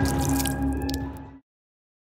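Background music with sustained notes, overlaid with wet dripping and splattering sound effects; it fades and then cuts off to silence about one and a half seconds in.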